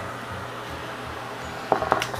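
Black+Decker handheld garment steamer hissing steam steadily onto denim jeans, with a low steady hum underneath.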